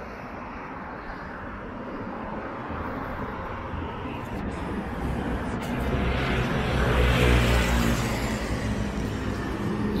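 City street traffic with a vehicle engine passing close by. The engine hum and road noise swell gradually to a peak about seven seconds in, then ease off.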